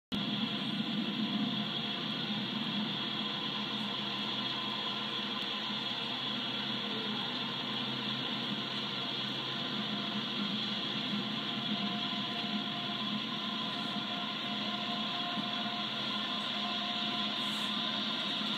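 Steady background hum and hiss with several faint, unchanging tones, with no distinct event.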